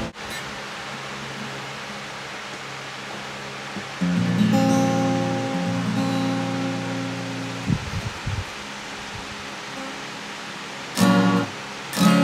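Acoustic guitar between songs: a steady hiss with faint ringing strings, then a single chord strummed about four seconds in and left to ring for a few seconds. A few soft low knocks follow near the middle, and a short strum near the end opens the next song.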